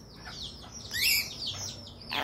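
Caged parrot giving a few short, high chirps and whistles, the loudest about a second in.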